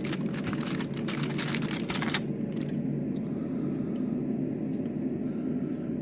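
Close crackling and rustling as the cardboard advent calendar is handled and a chocolate is taken out of its tray, lasting about two seconds. After that only a steady low hum is left.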